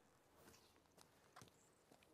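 Near silence, broken only by a few faint, short clicks.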